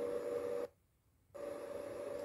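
Steady hiss with a constant thin hum-like tone, broken about two-thirds of a second in by roughly half a second of dead silence where the played-back video cuts to a new shot.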